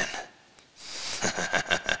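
A man laughing under his breath: a breathy chuckle in quick pulses that begins about a second in.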